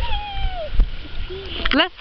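A child's high-pitched, drawn-out vocal call that glides down in pitch and lasts under a second, over a low rumble; speech begins near the end.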